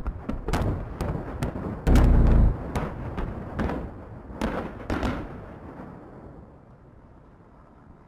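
A chain of large explosions going off one after another: a rapid string of sharp blasts over the first five seconds, the heaviest with a deep boom about two seconds in, then a rumble that fades away.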